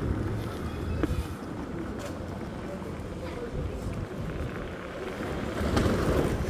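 SpeedSavage S11 electric scooter riding over interlocking paving stones: a low, uneven rumble from the tyres and suspension, with wind on the microphone.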